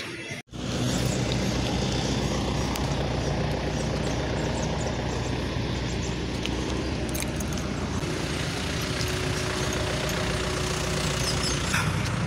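Steady outdoor street noise with a low vehicle engine rumble. A faint steady hum joins for a few seconds near the end.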